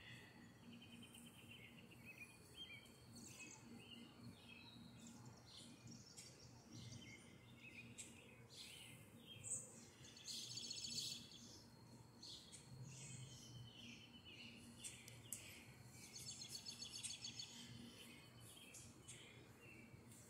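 Faint outdoor ambience with distant small birds chirping, and two short rapid trills about ten and about sixteen seconds in, over a faint low steady hum.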